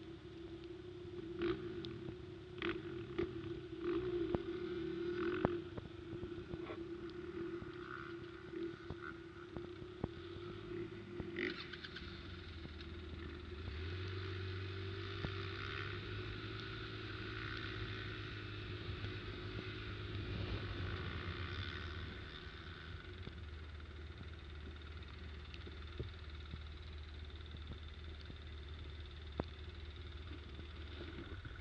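ATV engine running at low speed, heard from the machine itself. A steady engine note with sharp knocks and rattles fills the first ten seconds, then the engine settles into a lower, steadier rumble as it moves off through the mud, louder for a while in the middle.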